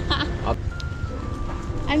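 A woman laughing out loud, then a short musical cue of a few held notes stepping down in pitch, over a steady low rumble.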